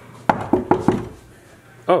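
Four quick knocks on a wooden changing-room door, about a fifth of a second apart, each with a short hollow ring.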